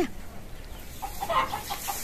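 A hen cackling: a short run of quiet clucks starting about a second in. This is the egg-laying cackle, taken as a sign that she is about to lay.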